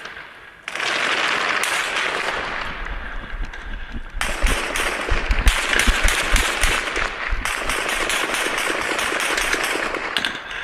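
Dense small-arms gunfire, much of it automatic, that starts suddenly about a second in. From about four seconds in it turns into a rapid string of sharper cracks.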